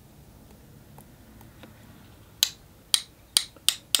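Round watercolour brush tapped against the handle of a second brush to spatter paint. A few faint ticks come first, then five sharp clicks in the last second and a half, each following sooner than the one before.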